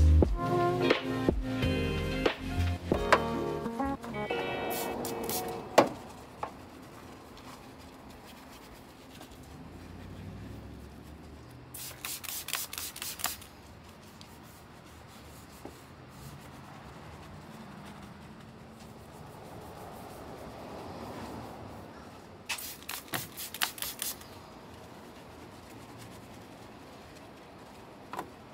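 Background music fades out over the first few seconds. Then a detail brush scrubs foam over the engine-bay plastics with a soft rubbing, and there are two quick runs of short, sharp strokes, one about halfway through and one near the end.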